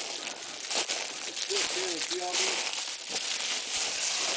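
Footsteps crunching on dry leaf litter, about one step every 0.7 s, over a steady hiss. A short voiced sound comes around the middle.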